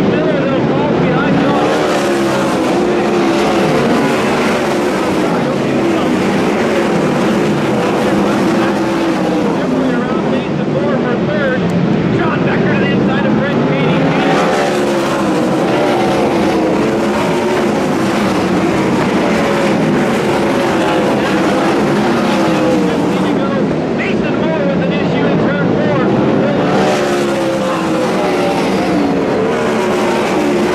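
A pack of 410 sprint cars' V8 engines racing on a dirt oval, their pitch rising and falling as they accelerate and lift through the laps. The field passes louder and brighter three times, roughly every twelve to thirteen seconds.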